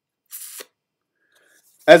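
Near silence in a pause of speech, broken once by a short, soft hiss about a third of a second in. A man's voice starts right at the end.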